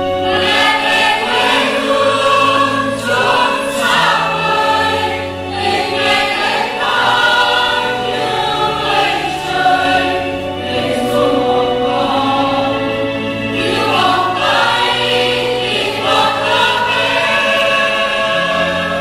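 A choir singing a slow hymn over sustained low accompaniment notes.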